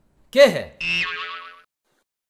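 A man's short exclamation, then a wobbling, springy comic 'boing' sound effect lasting under a second that fades out.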